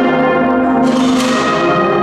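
Cornet-and-brass processional band (agrupación musical) playing a slow march, holding full sustained chords, with a cymbal crash ringing out about a second in.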